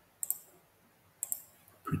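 Two quick double clicks of a computer mouse, about a second apart.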